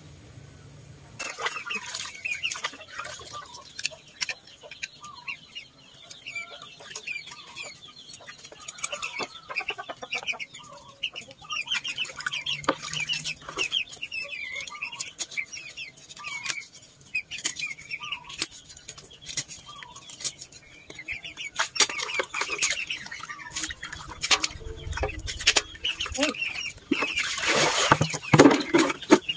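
Chickens clucking in the background, with scattered sharp clicks and knocks from fish being cleaned with a knife and from basins and a bamboo sieve basket being handled; the knocks come thicker and louder near the end.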